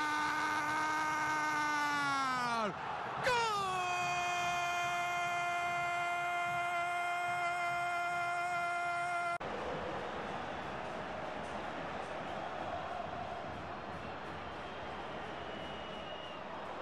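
A TV football commentator's long drawn-out Spanish goal call, "gooool," held on one note, dipping in pitch about three seconds in and then held again on a higher note. It cuts off abruptly about nine seconds in, leaving a quieter, steady stadium crowd noise.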